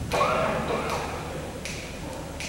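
A steady count-off of sharp clicks, a little more than one a second, setting the tempo just before the band comes in. A voice briefly sounds under the first click.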